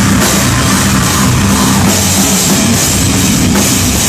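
A metal band playing live at full volume: a fast, busy drum kit under electric guitars and bass, loud and dense.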